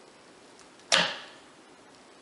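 A wire soap cutter's wooden arm snapping down through a loaf of cold process soap: one sharp clack about a second in, ringing briefly as it dies away.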